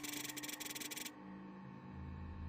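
Faint ambient electronic background music with steady held tones. At the start, a rapid clicking buzz lasts about a second and is the loudest sound.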